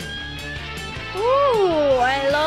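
Live rock music with electric guitar, heading into the guitar solo. About a second in, a loud pitched sound comes in, swooping up and then down.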